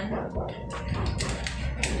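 Taps from a tripod's plastic phone-holder clamp being handled, ending in one sharp click near the end.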